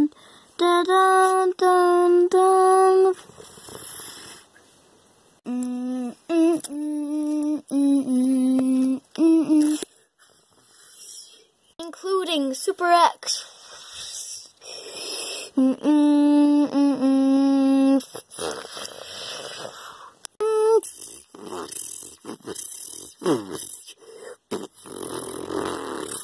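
A child singing a dramatic "dun dun dun" tune in groups of short, held notes, several bursts of three or four notes with pauses between.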